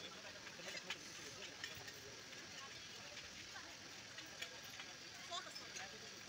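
Faint outdoor background of distant people chattering, with scattered small clicks and knocks.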